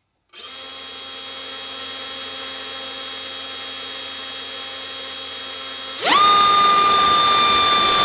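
BrotherHobby R4 2206 2300kv brushless motor spinning a Racekraft 5051 propeller on a thrust test stand. It runs with a steady whine at low throttle. About six seconds in it is pushed quickly to full throttle, drawing about 29 amps, and the whine rises sharply to a much louder, higher pitch that holds.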